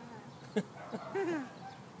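A short vocal sound, a laugh-like call that rises and falls in pitch, about a second in, after a brief click.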